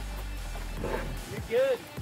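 Background music with a low steady rumble underneath, and a voice heard briefly near the end.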